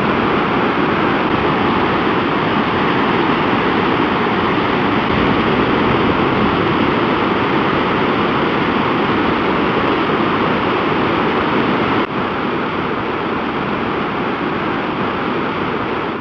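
Mountain river in flood after heavy rain, a torrent of white water rushing over boulders: a loud, steady rush with a brief dip in level about twelve seconds in.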